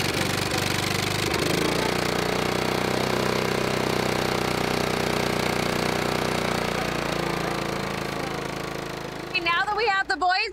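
Gasoline engine of a Ditch Witch 1020 walk-behind trencher running steadily. Its pitch shifts about a second and a half in, and it grows quieter over the last few seconds.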